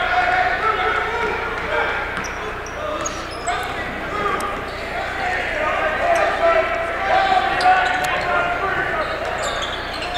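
A basketball being dribbled on a hardwood gym floor, under the steady chatter and calls of a crowd of spectators in the bleachers.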